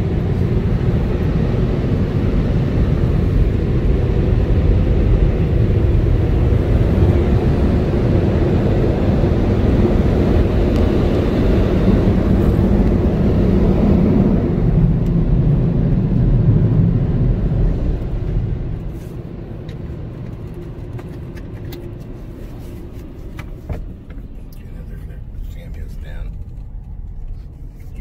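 Ryko Thrust Pro car-wash dryer blowers blasting air over the car, heard from inside the car. The loud rush drops away sharply about 18 seconds in, leaving a much quieter hum.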